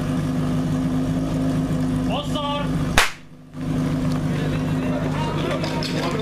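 Fire-attack pump engine running steadily. About three seconds in, a single sharp bang gives the start signal, followed by shouting and cheering.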